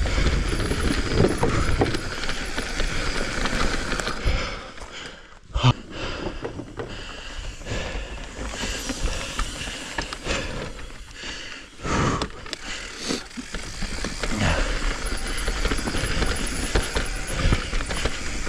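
Full-suspension mountain bike riding down a rough dirt trail: tyres rolling over dirt, rocks and roots, with rattles and knocks from the bike over bumps. There is a sharp knock about five and a half seconds in.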